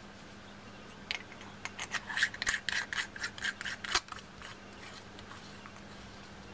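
Stainless-steel chamber of a rebuildable atomizer being screwed onto its deck: a quick run of short metal-on-metal scrapes of the threads, starting about a second in and stopping about four seconds in.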